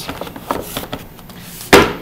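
Hard plastic carrying case snapped shut: soft handling noises, then one loud clack of the lid closing near the end.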